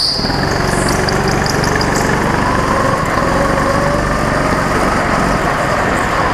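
Go-kart's small engine running at fairly steady revs, heard from the kart itself, with a short high squeal at the very start as the kart comes out of a corner.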